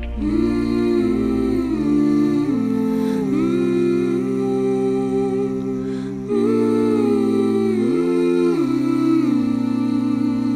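Music: layered wordless vocal harmonies, several voices moving together in held notes that slide from one pitch to the next, with a brief dip about six seconds in.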